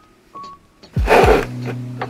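Background music: a sparse electronic beat with a few short high notes, then a heavy kick drum with a loud cymbal-like burst about a second in, followed by a held low bass note.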